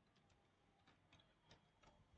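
Faint computer keyboard keystrokes, about half a dozen scattered clicks over near silence.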